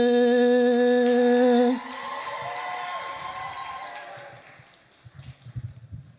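A voice holding one long, steady sung note that breaks off about two seconds in, followed by a fainter, higher held tone that fades away over the next few seconds.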